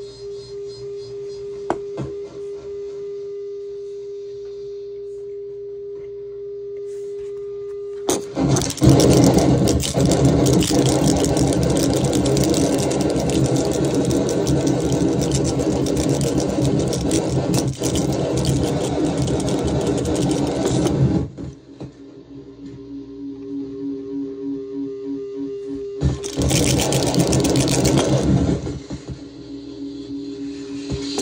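Harsh noise from a Death Metal distortion pedal chained into a Mantic Hivemind fuzz, a DOD Buzzbox clone. It starts as a steady buzzing drone, then about eight seconds in it breaks into a loud, dense wall of distorted noise that lasts until about 21 s. Quieter pulsing tones follow, then a second short loud burst near the end.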